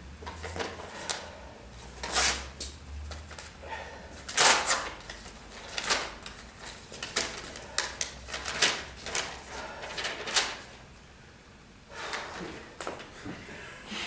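Paper envelope being opened and handled: a dozen or so irregular, short rustles and light knocks, with a faint low hum under the first half.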